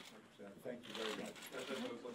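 People's voices talking in the room, with scattered clicks and handling noise.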